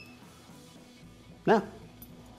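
Faint background music under a low room tone, with a very short high electronic beep at the start. About a second and a half in, a man says a brief "yeah", the loudest sound.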